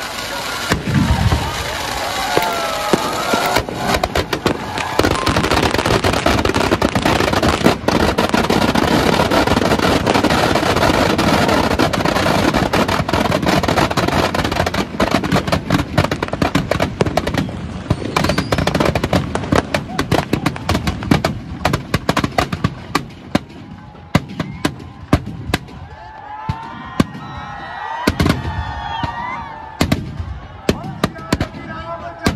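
Firecrackers inside a burning Ravan effigy going off in a dense, continuous crackle of rapid bangs. After about two-thirds of the way through, this thins out to scattered single bangs.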